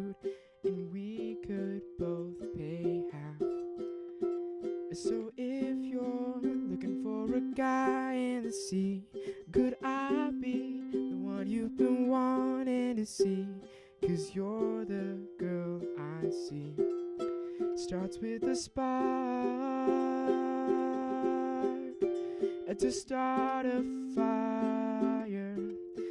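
Acoustic ukulele strummed in a steady rhythm, its chords changing every second or two.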